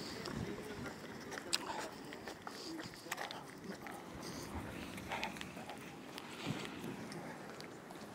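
Faint, indistinct voices with the scuff of footsteps, broken by scattered clicks and knocks from a handheld phone being moved about.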